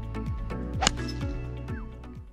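Background music with a sliding bass line. A little under a second in comes a single sharp click: a two-iron striking a golf ball off the tee.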